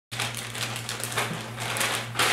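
Clear plastic zipper-seal storage bag crackling and crinkling as it is pulled open and handled, with irregular small clicks of the seal and plastic.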